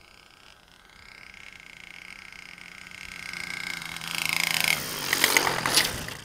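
Small Evolution gas engine of an RC airplane running steadily and growing louder as it approaches, its pitch easing down slightly. Near the end, crackling and clattering knocks as the plane touches down and rolls on the grass.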